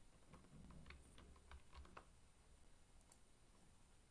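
Faint clicking of computer keys: a quick run of short clicks between about half a second and two seconds in, and two more near three seconds, over a faint low hum.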